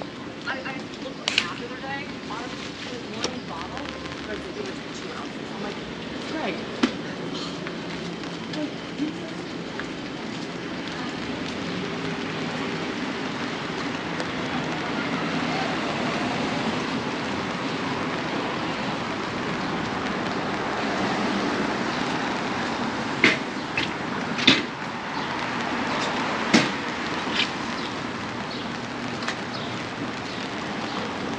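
City street ambience: a steady hiss of traffic on wet pavement that slowly grows louder, with voices of passers-by and a few sharp knocks, three of them close together near the end.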